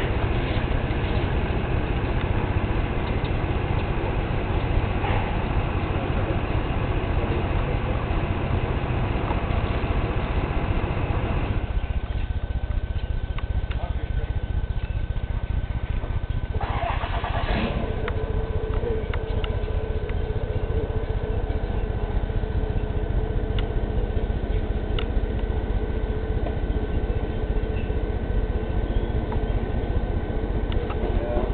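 A car's running engine giving a steady low rumble. The sound thins out about twelve seconds in, and after a short noise a steady hum tone joins it from about eighteen seconds.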